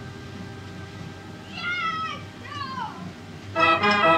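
A 98-key Gavioli fair organ falls quiet. Two short, high calls that bend up and down in pitch are heard about two and three seconds in. Then the organ starts playing again near the end, loud, with many sustained reed and pipe notes.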